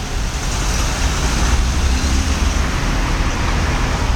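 Passenger minibus driving past close by and pulling away, with a steady low engine rumble and tyre noise amid street traffic.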